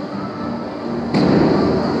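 Amusement arcade noise: machines and kiddie rides with steady electronic tones, jumping suddenly louder a little over a second in, as a loud noisy sound such as a ride starting up cuts in.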